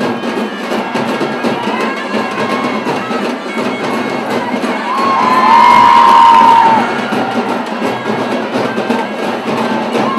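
A large street crowd cheering and shouting over music. About five seconds in the cheering swells loudly for a second or two, with a few held high notes over it that drop away as it subsides.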